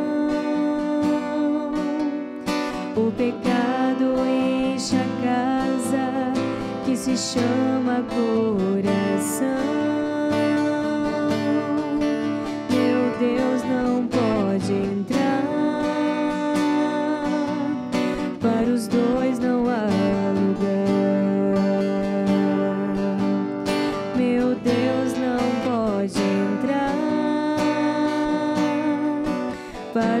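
A communion hymn sung with acoustic guitar accompaniment.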